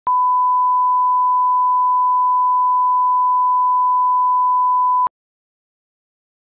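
1 kHz line-up reference tone played with SMPTE colour bars: one steady, unwavering beep held for about five seconds, then cut off abruptly.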